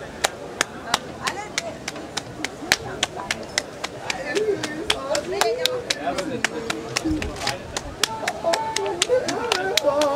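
Two people playing a hand-clapping game, palms slapping together in a quick steady rhythm of about four claps a second. From about four seconds in a voice joins in over the claps.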